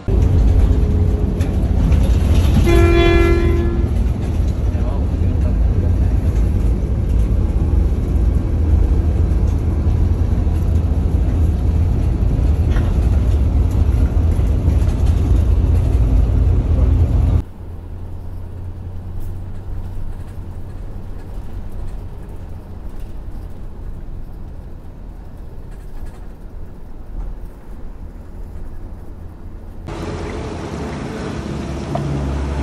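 Diesel bus running on the road, heard inside the cabin as a loud, steady low rumble. A horn sounds for about a second, about three seconds in. After about seventeen seconds the rumble drops suddenly to a quieter level.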